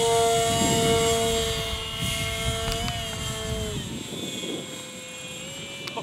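Durafly Goblin Racer's electric motor and propeller whining at three-quarter throttle just after a hand launch. The pitch holds steady for about three seconds, wavers, drops, and fades as the plane climbs away.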